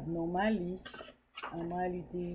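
A woman talking in short phrases, with a brief hiss and a sharp click in a pause about a second in.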